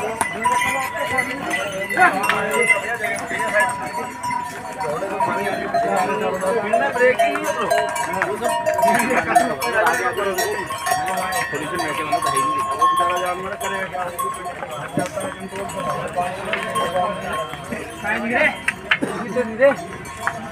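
A crowd of people talking over one another, with bells on passing pack ponies and mules ringing steadily through it.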